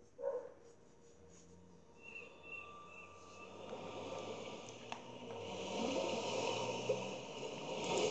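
Film-trailer soundtrack of underwater bubbling ambience that swells steadily louder over several seconds, after a short sharp sound just after the start.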